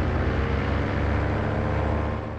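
Paramotor engine and propeller running steadily in flight, a continuous drone heard from the pilot's frame.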